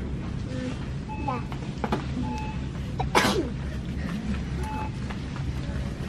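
Store background: a steady low hum with faint voices. About three seconds in comes one short, loud burst of breath or voice from someone close by, like a sneeze.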